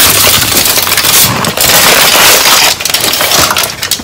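Aluminium foil wrapper crinkling loudly close to the microphone as a taco is unwrapped from it. The dense crackle thins into separate crinkles in the last second or so.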